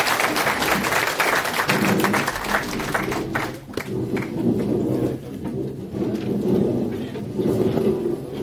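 Lecture-hall audience applauding, the clapping dying away about three and a half seconds in. It gives way to a low hubbub of many people talking and moving about as the audience gets up.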